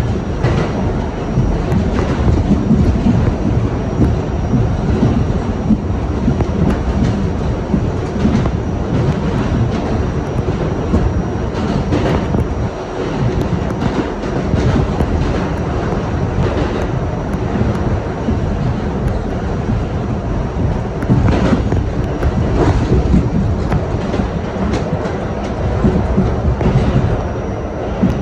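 R68/R68A subway train running through a tunnel, heard from inside the front car: a steady rumble of wheels on rails with scattered clicks as the wheels pass over the track.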